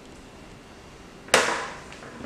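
Knife being forced through the wall of a plastic bucket, giving a single sharp snap about a second and a half in that fades over about half a second.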